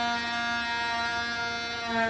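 A harmonica holding one long, steady note, played with cupped hands in a blues solo. The note breaks off at the very end as new notes begin.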